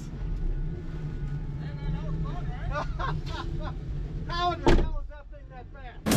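2013 Ford Mustang GT's 5.0-litre V8 idling, heard as a steady low hum from inside the cabin, with one sharp knock a little before the end.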